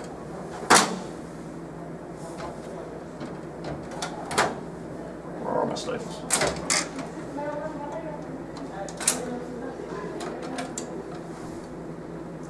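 Plastic clicks and knocks from a copier finisher's swing-out unit and its latches and levers being handled. The loudest click comes about a second in, with a few more scattered through.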